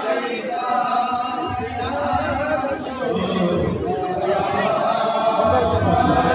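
Men's voices chanting together, rising in loudness toward the end.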